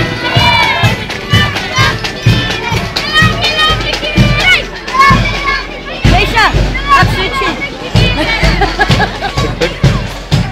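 Parade marching band playing, with a steady drum beat of about two beats a second, over the voices of a crowd of onlookers, children among them.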